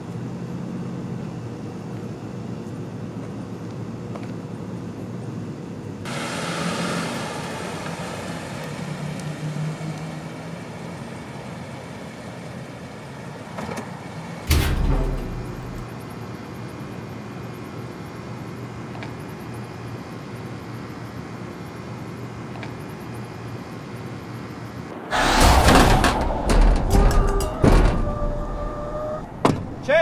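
Horror film score: a low, steady drone that swells about six seconds in, a single heavy hit with a deep boom about halfway through, and a loud burst of hits with short held tones near the end.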